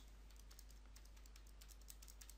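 Faint, quick clicks of calculator keys being pressed, several a second.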